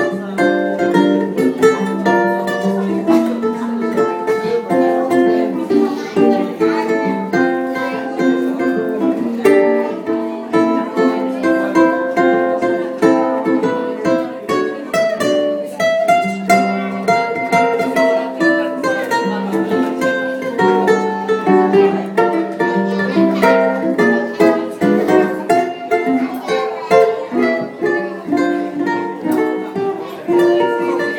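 Live ukulele and guitar duo playing an instrumental tune: a quick plucked ukulele melody over a steady guitar accompaniment.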